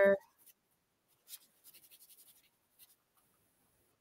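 Black permanent marker scribbling over a hand-stamped aluminium cuff, inking the stamped letters: faint, quick scratchy strokes for a second or two in the middle.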